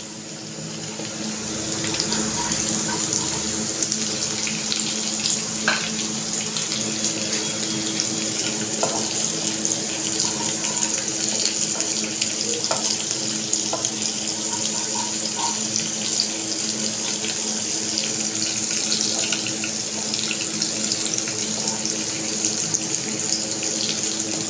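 Chopped garlic and green chillies sizzling steadily in hot desi ghee in a wok, the sizzle rising over the first couple of seconds after the chillies go in, with a fine crackle throughout as they fry towards light golden.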